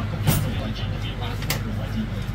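Two sharp strikes of a Chinese cleaver on a round wooden chopping block, a little over a second apart, over a steady low background hum.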